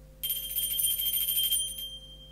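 Altar bells (sanctus bells) shaken in a rapid, high-pitched jingle for about a second and a half, rung to mark the elevation of the chalice at the consecration. One tone rings on and fades after the shaking stops.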